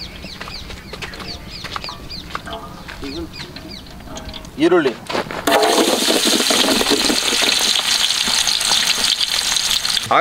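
Chopped onions hitting hot cooking oil in a large aluminium pot and starting to sizzle, a loud steady hiss that begins about five and a half seconds in and carries on.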